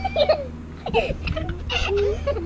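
Young children's voices in short, high-pitched squeals and cries while they swing, over a steady low rumble.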